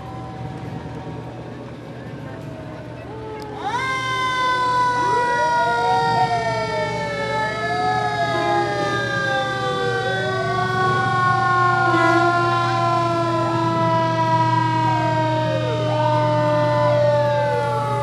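Fire truck sirens. About three and a half seconds in, one siren rises quickly and then slowly falls in pitch for the rest of the time, while a second siren wails up and down beneath it.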